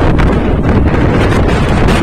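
Strong wind buffeting the microphone: a loud, steady low rumble.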